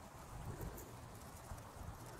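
Faint soft thuds and rustling of soil and roots as a dug dahlia tuber clump is lifted out of the bed and handled.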